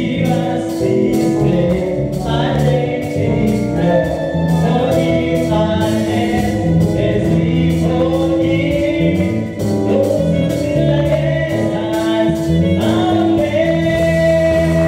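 Live gospel praise music: a male lead singer on a microphone with a group of backing singers, over keyboard and a steady drum beat.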